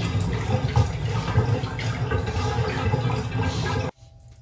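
Water running in a bathtub: a steady rushing splash that cuts off abruptly near the end.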